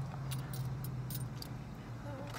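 Keys jingling lightly in short, sharp clinks several times over a steady low hum of the car interior.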